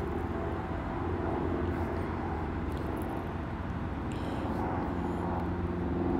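A steady low mechanical hum with several faint steady tones layered in it, unchanging throughout.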